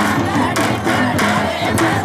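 Group of women singing a traditional Banjara phag folk song in chorus over a regular percussive beat, about three strokes a second, with crowd voices mixed in.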